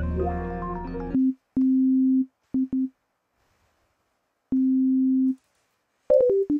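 A synth-driven beat loop with a deep bass plays and stops about a second in. Then a software synthesizer sounds one steady note several times: two held notes, two short taps, and after a pause one more held note.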